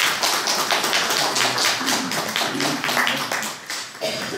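Small audience applauding, a dense patter of hand claps that thins out near the end.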